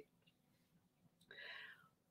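Near silence: room tone, with one faint, brief breathy sound about a second and a half in.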